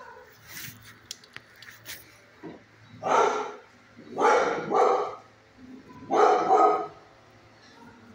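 A dog barking in three loud bursts starting about three seconds in, the middle burst a quick double bark.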